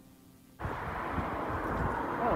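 Outdoor street noise with wind rumbling on the microphone, cutting in abruptly about half a second in after a very quiet stretch with a faint hum.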